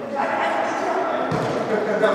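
Players' voices shouting in an echoing sports hall, with a thud from the futsal ball striking a foot or the hard court about a second and a half in.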